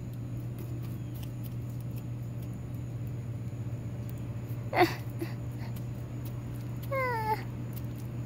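Two brief high-pitched calls: a short sweeping one about five seconds in and a falling one near seven seconds. Under them runs a steady low hum.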